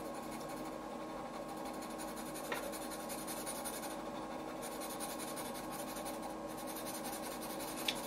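Orange colored pencil shading on paper: a steady scratchy sound of quick, close back-and-forth strokes as the colour is laid over the cap.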